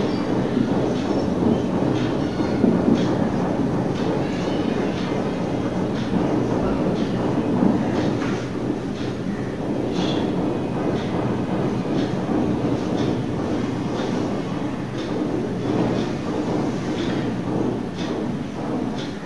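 Marker pen strokes on a whiteboard, short faint scratches now and then, over a steady low rumble of background noise.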